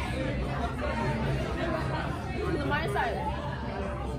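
Cafe chatter: several people talking over one another in a steady babble, with a low room hum beneath.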